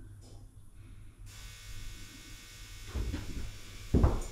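A steady electric buzz starts about a second in and keeps on, with dull thuds of handling near the end and a sharp knock as it closes.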